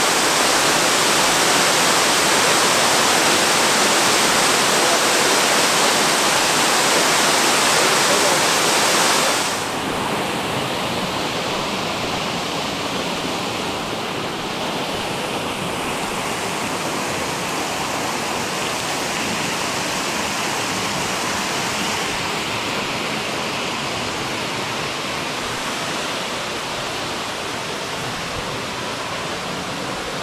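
Copperas Falls, a narrow waterfall, pouring into a pool with a steady rush of falling water. The sound drops suddenly about nine seconds in and carries on lower and duller.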